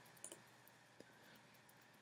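Near silence with a couple of faint, brief computer mouse clicks.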